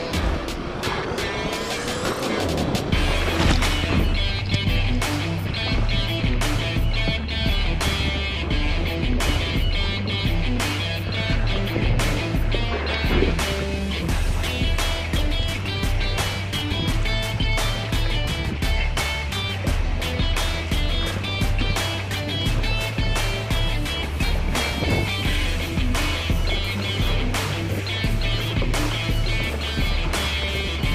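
Background music with a steady beat and a stepping bass line, opening with a rising sweep.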